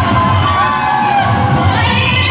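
A crowd cheering and shouting over live Jharkhandi folk dance music.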